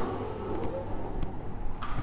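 Steady low background hum and ambient noise, with no distinct sound event.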